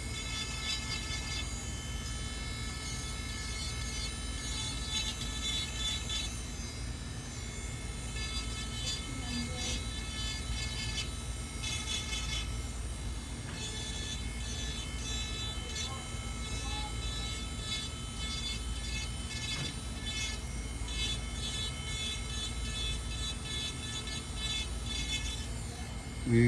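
Electric nail drill (e-file) running with a steady high whine as its fine bit files acrylic nail at the cuticle edge; a grittier grinding comes and goes as the bit touches the nail.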